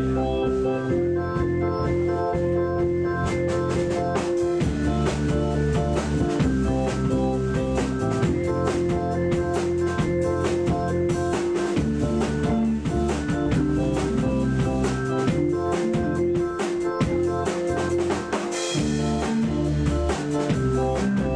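Live band playing an instrumental passage: sustained organ-like keyboard chords that change every second or so, over a drum kit keeping a steady beat, with a cymbal splash near the end.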